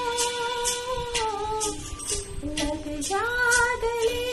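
A woman singing a Hindi song in long held notes that bend and glide, over recorded accompaniment with a steady light beat.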